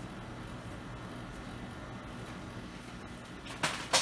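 Cooling fans of a running Athlon 64 X2 desktop computer with a steady hum, spinning even though the BIOS reports a CPU fan failure or low fan speed. A brief noise sounds near the end.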